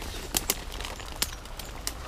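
Twigs and brush crunching and snapping as someone pushes on foot through undergrowth, with about four sharp snaps over a steady rustle. A low wind rumble on the microphone runs underneath.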